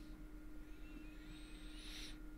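Faint room tone with a steady low electrical hum. A soft hiss with a thin rising whistle swells near the end.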